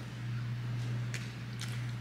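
A person chewing a mouthful of food, with a couple of faint mouth clicks in the middle, over a steady low hum from a dishwasher running in the background.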